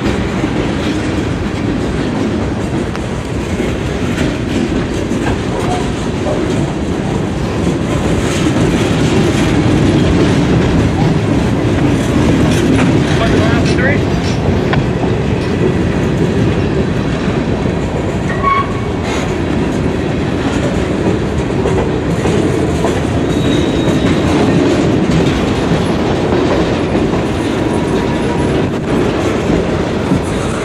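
Freight train cars rolling past close by: a loud, steady rumble of steel wheels on the rails, with a few brief faint squeals from the wheels.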